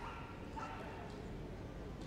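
A Staffordshire Bull Terrier giving two short, high yips in the first second, over steady low background noise.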